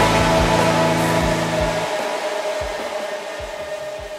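Electronic music fading out at the end of a track: a dense distorted noise wash over sustained tones, with the low bass dropping out about two seconds in.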